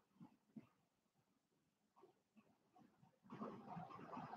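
Near silence: room tone with a few faint ticks, then a faint, unidentified low sound that starts near the end.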